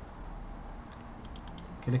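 A quick cluster of computer mouse clicks about a second and a half in, as a file is chosen and opened, followed by a spoken word at the very end.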